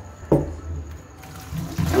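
Hot cooking water and boiled gnocchi poured from a pot into a plastic colander in a steel sink, the pouring and splashing starting a little over a second in. A short bump about a third of a second in.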